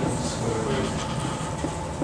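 Marker writing on a whiteboard in a few short, faint strokes, over a steady low room rumble.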